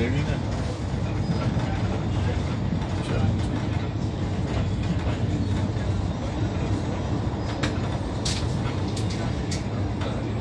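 Passenger train coach in motion, heard from inside: a steady low rumble of wheels on the rails, with a few sharp clicks near the end.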